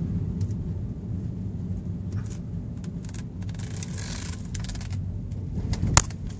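Steady low rumble of a car's engine and tyres heard inside the cabin while driving slowly, with a brief hiss about four seconds in and a sharp click at the very end.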